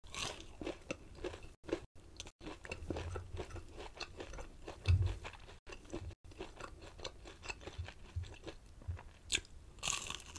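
Close-miked chewing of crispy breaded fried chicken rings, with many small crackling crunches. A sharp crunchy bite comes right at the start and another near the end.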